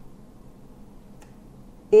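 Pause in a voice-over: faint steady background hiss with one faint click about a second in, then a woman's voice starts right at the end.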